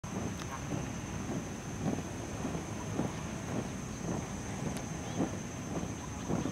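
A squad of soldiers marching in step, their boots landing together in a steady cadence of about two steps a second, with wind on the microphone and a steady high-pitched whine.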